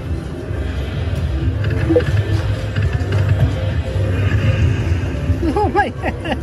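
Ainsworth Thunder Cash slot machine playing its free-games bonus music and sound effects over a steady low bass drone while the bonus win climbs, with a few short swooping tones near the end as the win reaches a hand-pay jackpot.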